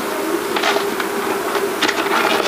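An envelope being torn open and crinkled by hand, in irregular rustling bursts over a steady buzzing hum.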